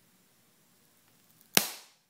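A strip of blue foam snapping in two under hand bending: one sharp crack about one and a half seconds in. The foam breaks beside the micro-slurry joint, not through it, because the bond is stronger than the foam.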